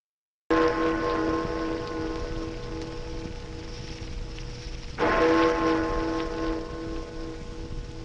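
Clock chime striking the hour of noon: two deep, bell-like strokes about four and a half seconds apart, each ringing out and slowly fading, over a steady hiss and low hum.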